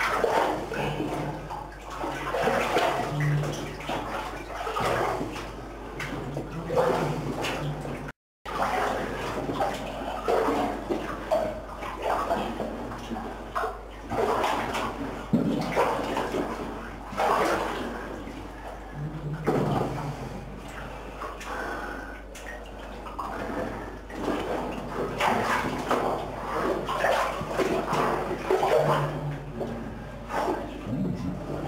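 Waist-deep water sloshing and splashing in irregular surges as people wade through a flooded mine tunnel.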